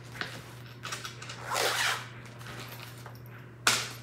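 Things being handled on a table: a few light clicks, a rustling slide of fabric or paper about a second and a half in, and a sharp knock near the end as something is set down. A steady low hum runs underneath.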